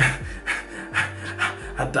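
A man laughing breathily over background music with a steady beat, about two beats a second, and a deep bass line.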